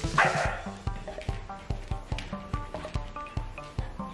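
Background electronic music with a steady beat. Just after the start, a puppy gives one short, loud bark over it.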